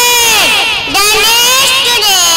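A group of young children's voices chanting together in unison, high-pitched and drawn out in a sing-song, with a short break about a second in.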